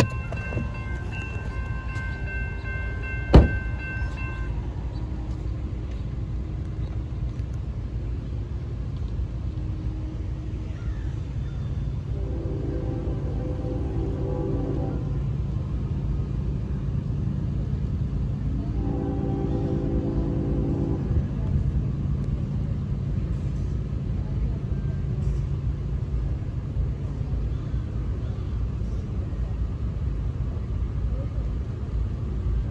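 Diesel locomotive horn sounding twice over a steady low rumble: a blast of about three seconds some 12 s in, and a shorter one of about two seconds near 19 s. Several high steady tones sound for the first four seconds, with one sharp click among them.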